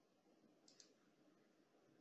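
Near silence: faint room tone, with one faint, quick double click a little under a second in.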